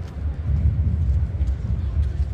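Wind buffeting the microphone: an uneven, gusting low rumble.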